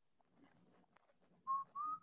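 Near silence, then two short whistle-like tones about a second and a half in, the second slightly higher and rising a little in pitch.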